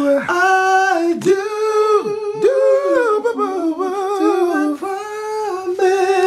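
A man humming and singing a slow love-song melody unaccompanied, without clear words, holding long notes that slide between pitches.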